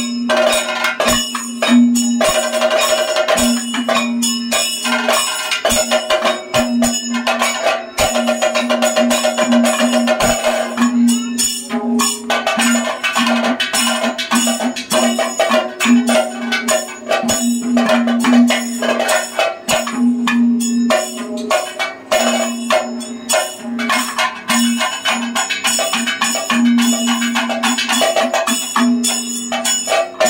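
Kathakali stage accompaniment: a dense, continuous run of drum strokes with metallic ringing tones sustained over them, as from the gong and hand cymbals that keep the beat for the dancer.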